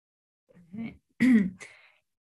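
A woman clears her throat and says "yeah", in short vocal sounds that start about half a second in.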